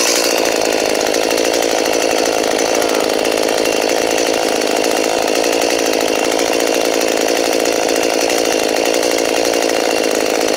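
Gasoline chainsaw running steadily at idle, with no revving.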